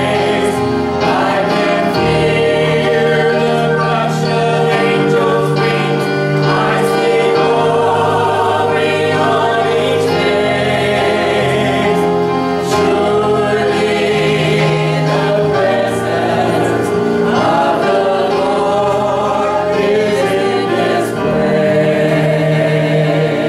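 Small mixed-voice church worship group singing a gospel hymn in harmony through microphones, with keyboard accompaniment holding sustained notes underneath.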